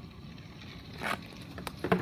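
A hockey stick striking a ball about a second in, then a louder, sharper knock near the end as the ball lands in a plastic bucket and tips it over. A steady low rumble runs underneath.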